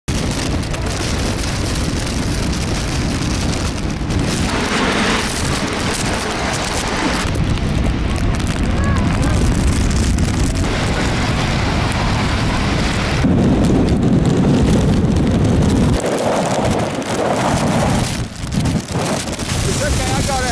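Storm-force wind gusting hard across the microphone, a loud rumbling buffeting that swells and eases with each gust, with rain mixed in. The gusts are strongest about two-thirds of the way through and slacken briefly near the end.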